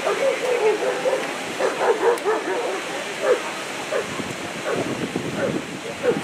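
Shepherd dog barking and yipping in short repeated bursts at the helper as it guards him, a quick run in the first second, then spaced barks.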